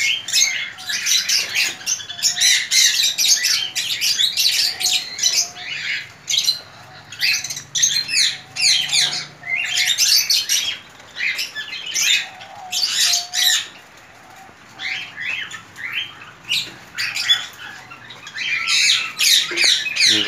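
A crowd of cage birds in an aviary chirping and squawking almost without pause, in quick high-pitched calls, easing off briefly about two-thirds of the way through.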